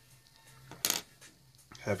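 A single short, sharp clink of a small hard object, a little under a second in, over faint background music.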